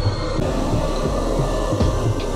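Loud, continuous low rumbling with irregular thuds over music, typical of a horror walk-through attraction's soundtrack.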